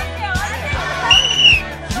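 A hand whistle blown once in a short test blast of about half a second, a little past the middle, rising slightly then falling. It is the signal for the racers to start.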